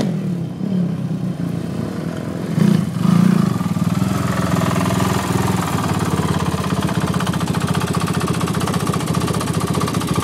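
Sport quad (ATV) engines revving, with a louder surge about three seconds in; then, from about four seconds in, one quad's engine idling close by with a quick, even putter.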